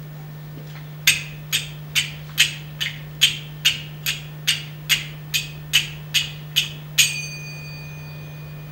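Small finger cymbals struck in a steady rhythm, about fifteen sharp strikes at a little over two a second, with the last strike left to ring on with a bright metallic tone.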